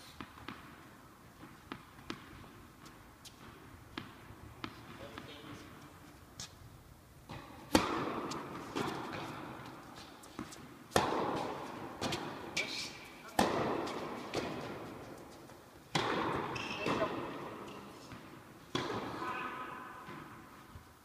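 Tennis ball bounced on an indoor court several times before a serve. About eight seconds in comes the serve, the loudest strike, followed by a rally of racket hits about every two to three seconds. Each hit rings on in the echo of the large hall.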